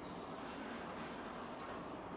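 Quiet room tone: a faint, steady hiss with no distinct sound events.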